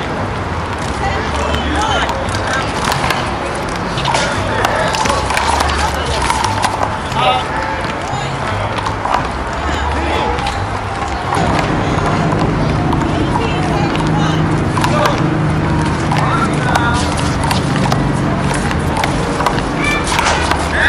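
Voices talking in the background over music with a low bass line, with scattered sharp knocks among them.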